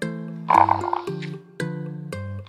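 A munchkin cat gives a short, rough trilling call for about half a second, starting about half a second in, over background ukulele music.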